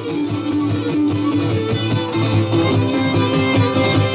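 Cretan folk music from a live ensemble: bowed Cretan lyra over a rhythmic plucked-string accompaniment, growing louder over the first seconds.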